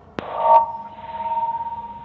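A click on the telephone line, then a steady high ringing tone that holds until the caller starts talking. It is typical of feedback from a caller's television left turned up near the phone.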